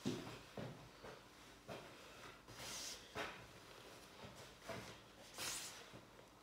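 Faint knocks and rustling of a person moving about and handling things, with two louder rustles, one about two and a half seconds in and one near the end.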